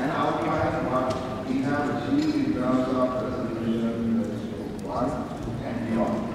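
Speech only: a person talking in a large assembly chamber.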